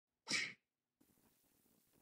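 One short burst of breathy noise about a quarter second in, like a sneeze or sharp exhalation, then faint room tone from about a second in.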